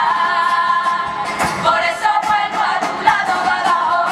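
Women's carnival murga chorus singing together in long held notes, backed by strummed guitars and drum beats.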